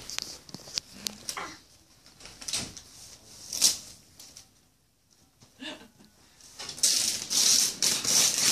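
Wrapping paper being torn and crinkled off a gift box: short scattered rustles, then a longer, louder tearing near the end as the paper comes away.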